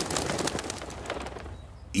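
Cartoon sound effect of a flock of pigeons taking flight: a flurry of flapping wings with cooing that fades away and stops just before the end.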